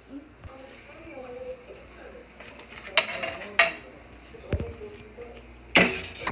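Faint, indistinct voices over room tone, with two sharp clicks of plastic plates knocked on a table about three seconds in and a duller knock a little later.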